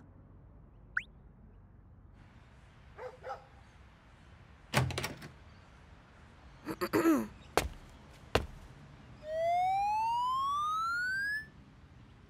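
Cartoon sound effects on a quiet track: a short upward whistle, a few knocks and clicks, and a throat being cleared. Near the end comes the loudest sound, a steadily rising electronic whine lasting about two seconds, a camera flash charging up.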